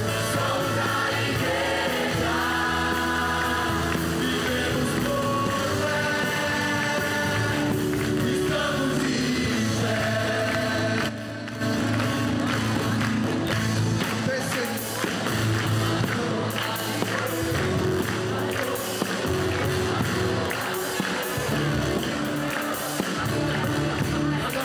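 Live gospel worship music: a large congregation and choir singing along with a band, with a brief break a little before halfway.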